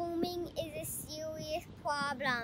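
A child singing without accompaniment: two long held notes, one at the start and one about a second and a half in, with a short sliding note just before the end.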